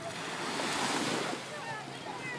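Small waves washing up on a sandy beach, the surf swelling to a peak about a second in and then easing off, with some wind on the microphone.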